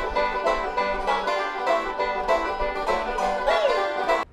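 Four five-string banjos played together in bluegrass style: a dense, bright stream of rapid plucked notes.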